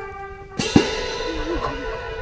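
Marching band brass holding a sustained chord, cut off about half a second in by a sudden loud hit from the drumline with a cymbal crash that rings and fades as the band plays on.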